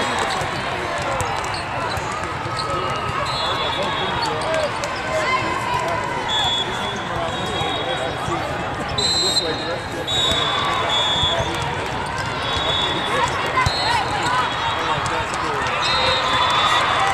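Volleyball tournament hall ambience in a large arena: many voices talking and calling at once, balls being struck and bouncing on the court, and repeated short, high referee whistle blasts from the surrounding courts.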